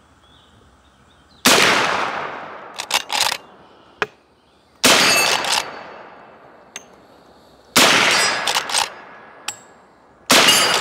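Three rifle shots from a .357 Magnum carbine, about three seconds apart, each trailing off slowly. After the second and third shots comes a clear metallic ring, as from struck steel plate targets. Short sharp clicks fall between the shots.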